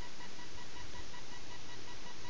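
Steady background hiss with a faint high whine, no other events.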